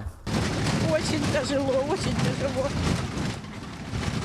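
A person's faint voice over loud, dense rumbling noise, which eases about three seconds in.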